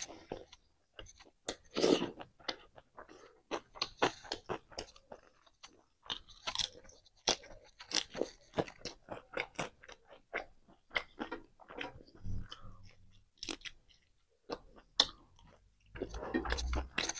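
Close-miked chewing of a mouthful of fried pork, rice and greens: an irregular run of short, crisp crunches and crackles as the food is bitten and chewed.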